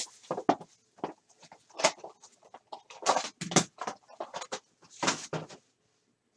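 Foil card-pack wrapper crinkling and rustling in irregular sharp crackles as it is handled and opened, stopping shortly before the end.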